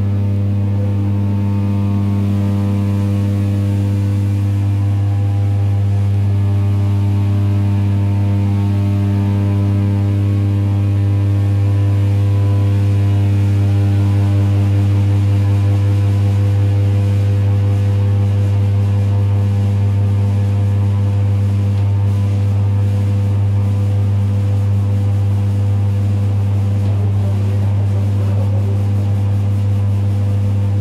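Steady, loud low electric hum with a stack of even overtones inside a moving ED9E electric multiple unit, from its AC traction equipment, over the train's running noise.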